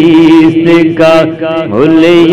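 Male voice singing an Urdu naat, drawing out a wordless melodic passage over a steady held drone, with a sliding turn in pitch near the end.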